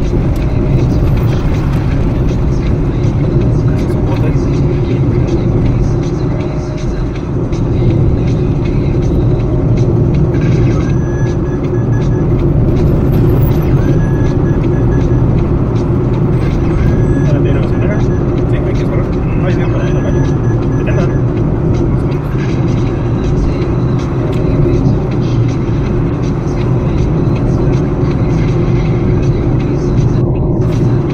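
Steady road and engine noise of a car driving along a city street, heard from inside the car.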